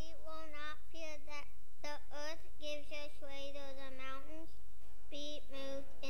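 A young girl's voice reading aloud into a microphone, high-pitched and in short phrases, over a steady low hum.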